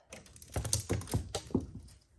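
Clothes hangers clicking and sliding along a closet rail as hanging shirts are pushed aside by hand, in a quick irregular run of clicks with fabric rustle.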